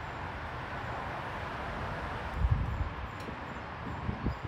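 Steady outdoor background noise. About halfway through there is a soft low knock, and a few lighter knocks follow near the end, as a freshly glued wooden table leg is handled and pressed back onto its pedestal.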